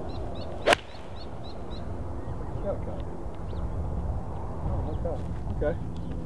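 A golf six-iron strikes the ball once, a single sharp crack under a second in. The golfer calls the strike a tad clunky. A steady low background rumble follows.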